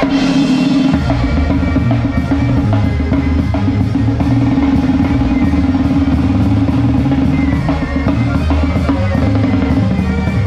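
Drum kit of a live banda sinaloense, played hard: fast snare (tarola) rolls and strokes with bass drum and cymbals, starting with a loud crash. A low steady note is held underneath.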